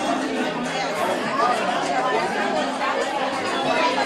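Crowd chatter: many people talking at once in a packed room, a steady hubbub of overlapping voices with no single voice standing out.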